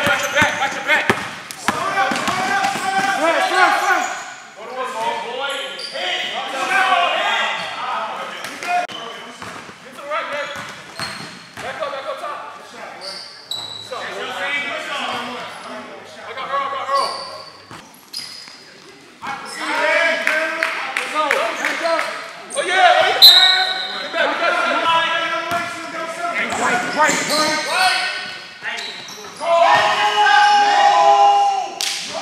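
A basketball bouncing on a gym's hardwood court during a pickup game, with players' voices calling out over it.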